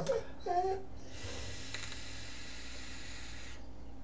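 A long drag on a sub-ohm vape tank fired at 30 watts: a steady airy hiss of air pulled through the atomizer. It starts about a second in and cuts off sharply after about two and a half seconds.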